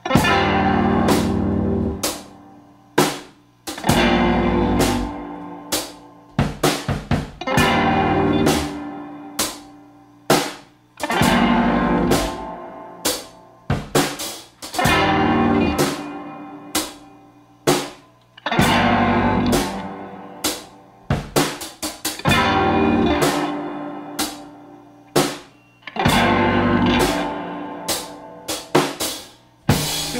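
A live band playing a song's instrumental intro: electric guitar, drum kit and keyboard. Loud held chords with drums strike about every four seconds and fade away, with quicker drum and cymbal hits in between.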